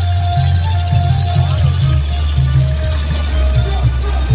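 Loud DJ sound-system music with a heavy, pulsing bass beat and a held melody line over it.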